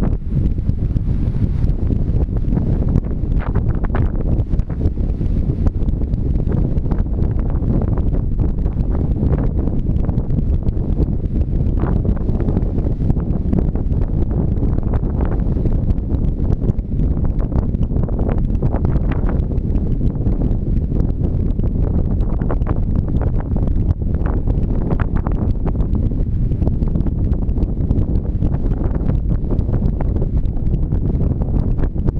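Wind buffeting the camera microphone: a loud, steady low rumble with brief gusty flutters throughout.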